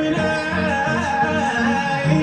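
A song playing: a sung voice over instrumental backing.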